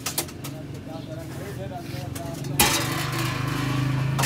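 Background voices with a few faint bird chirps, then a sharp metallic clank of stainless-steel cookware about two and a half seconds in, with a low steady hum behind it.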